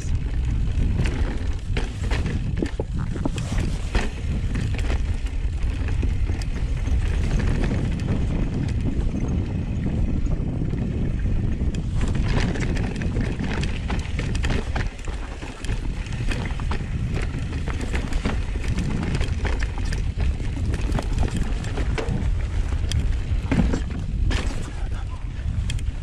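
Mountain bike ridden over a rocky dirt singletrack: a steady rush of wind on the camera microphone with tyre noise on dirt and rock, broken by frequent short clicks and knocks as the bike rattles over the rocks.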